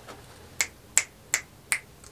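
Four quick finger snaps in an even rhythm, nearly three a second.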